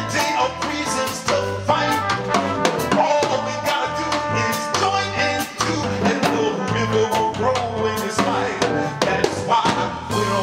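Live band playing an upbeat groove: drum kit strikes over a repeating bass line, with a man singing into a microphone.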